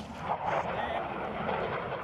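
Steady engine noise of an aircraft flying over.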